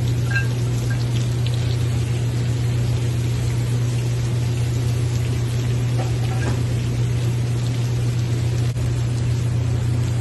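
Seafood and vegetables sizzling in a frying pan over a gas burner, under a steady low hum.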